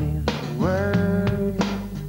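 Background music with a steady drumbeat and bass under a held melodic line that slides up into its note about half a second in.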